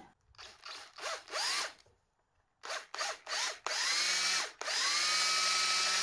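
Power drill boring into a small wooden figure carving to open the gap between its legs. It runs in several short bursts, its motor whine rising in pitch as it spins up, then holds a steady run of about three seconds in the second half.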